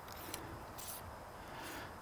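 Faint rubbing of metal on metal, with a few light clicks, as the sections of a telescoping whip antenna are slid down to shorten it.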